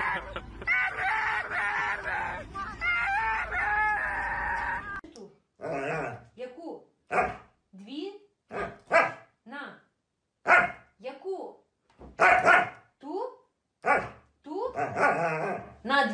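Huskies howling in long, wavering calls for about five seconds. Then, after a break, a husky puppy gives a string of short yips and barks that bend and fall in pitch, with pauses between them.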